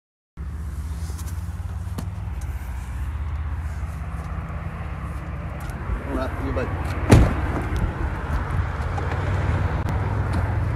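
Steady low rumble of wind buffeting the phone microphone while moving fast, cutting in just after the start, with a sharp knock about seven seconds in.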